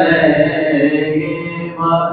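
A man singing a naat unaccompanied in a chant-like style, holding one long note over a steady low drone, and starting a new phrase near the end.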